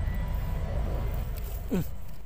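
Steady low background rumble of outdoor noise, with a brief falling voice sound near the end.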